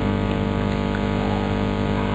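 Steady electrical hum and buzz on the microphone or sound system, made of several fixed tones, which the speaker puts down to interference from the mobile phone in his pocket.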